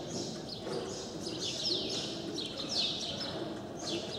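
Small birds chirping: quick, high, downward-sweeping chirps in clusters about once a second, over a steady low background rumble.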